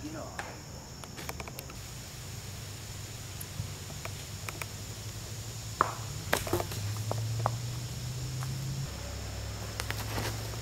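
Woodland ambience with a steady high insect drone over a low hum, and scattered footsteps and clicks as the camera is carried along, with a sharper knock about six seconds in.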